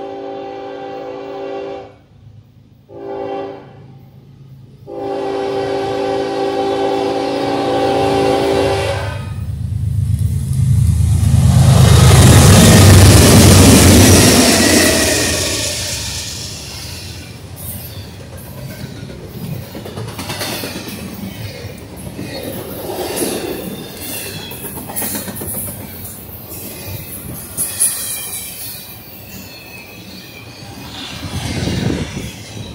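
Diesel freight locomotive horn sounding a long blast, a short one, then another long one as the train approaches. The locomotives pass loudest about twelve seconds in with a deep engine rumble, then the intermodal double-stack and trailer cars roll by with steady wheel noise and clicks over the rail joints.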